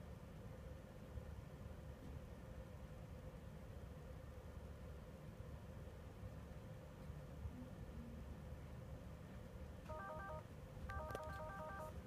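Quiet room hum, then about ten seconds in a short run of quick electronic beeps from the Dell XPS 13 9350 laptop, followed by a longer run of about seven. The laptop beeps like this as it shuts off during the fault it shows on its USB-C dock.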